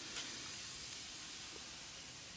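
Faint steady hiss of background noise.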